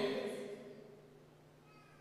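The echo of a man's amplified voice dying away in a large hall over about a second, then near silence with a faint low hum.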